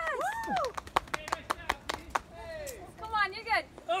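A person cheering a climber on with excited, wordless yells that rise and fall in pitch. About a second in, the yelling breaks for a quick run of about ten sharp slaps, roughly eight a second.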